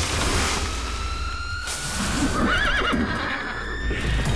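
A horse whinnies once, a short wavering call about two and a half seconds in. Before it comes a rush of noise as sand bursts up, and under it all runs a low rumble with a slowly rising tone.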